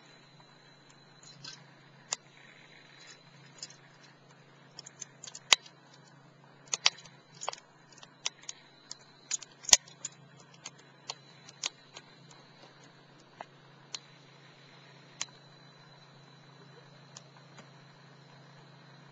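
Wood fire crackling: irregular sharp pops and snaps, some in quick clusters, the loudest about five and a half and nearly ten seconds in.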